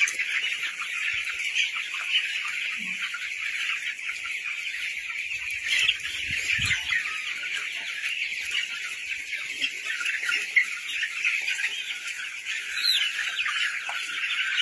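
A large flock of young broiler chicks peeping together in a dense, continuous chorus.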